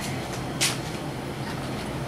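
Steady room hum, likely an air conditioner running, with one short breathy hiss a little over a quarter of the way in.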